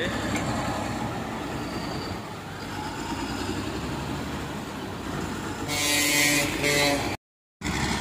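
Diesel engine of a Caterpillar motor grader running steadily as it drives over and spreads loose bituminous macadam. It grows louder with a hiss for about a second and a half near the end, then the sound drops out briefly.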